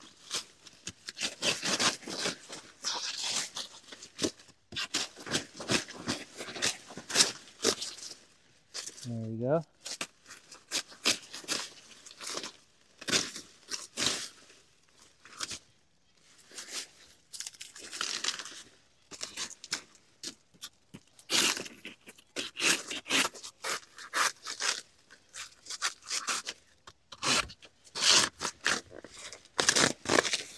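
Banana plant stalks and leaves being chopped and torn apart with a hand blade: repeated irregular crunching and tearing strokes in clusters, with leaf rustling.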